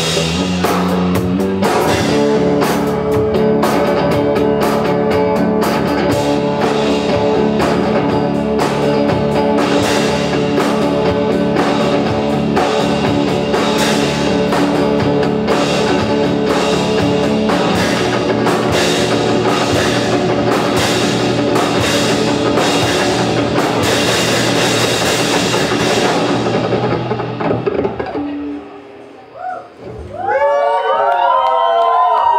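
Live rock band of electric guitar and drum kit playing loudly, drums hitting steadily under sustained guitar chords. A few seconds before the end the drumming stops and the guitar rings out and dies away as the song ends.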